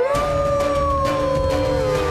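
A cartoon wolf's howl: one long call that glides up at the start, then holds and slowly sinks in pitch, over background music.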